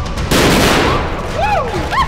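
A pyrotechnic gas-fireball explosion blowing apart a plastic model sail barge: a loud blast about a third of a second in that dies away over about half a second. It is followed by people whooping in rising-and-falling exclamations.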